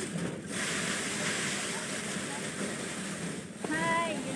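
Small rice threshing machine running as bundles of rice stalks are fed into it: a steady, dense rushing noise. A voice cuts in near the end.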